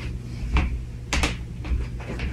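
A few short, sharp knocks and clicks, the middle ones a close pair, over a steady low hum.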